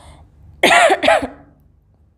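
A woman coughing twice in quick succession, from black pepper she has been sniffing to make herself sneeze.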